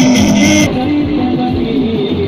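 Loud music with guitar played through a stack of PA loudspeakers. The treble drops away suddenly about two-thirds of a second in.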